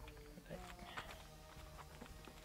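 A few faint clicks and rustles of a plastic-wrapped mailer being handled, over faint background music.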